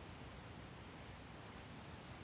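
Quiet woodland ambience: a faint steady hiss with faint high bird chirps.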